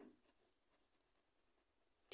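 Very faint scratching of a pen writing a word on lined notebook paper; otherwise near silence.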